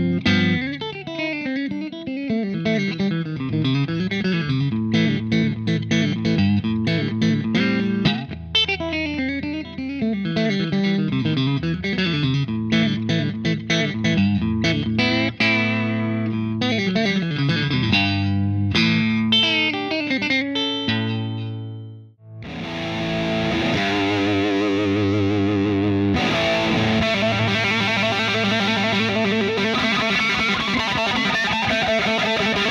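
Electric guitar, a PRS McCarty, played through a Suhr Badger 35 valve amplifier head and recorded direct through a Mesa/Boogie CabClone IR cabinet simulator with a little reverb. Quickly picked single notes and arpeggios run for about twenty seconds, then a brief fade. After that comes a denser, sustained, more distorted part with brighter treble.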